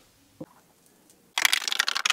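A burst of rapid, crackling rustle-clicks lasting about a second, starting about one and a half seconds in, after a near-silent stretch with a single faint click.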